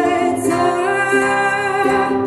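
A woman singing a slow song live into a microphone, holding long notes over an instrumental accompaniment.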